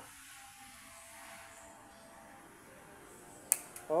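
Faint background hiss, then near the end a single sharp click followed by a couple of lighter ticks: a motorcycle fuel pump's plastic wiring connector snapping into place on the pump.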